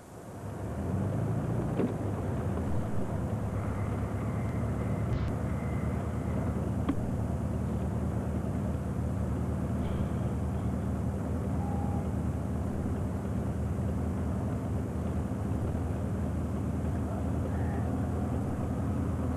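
Car engine idling steadily, heard from inside the cabin of a stopped car as a constant low hum.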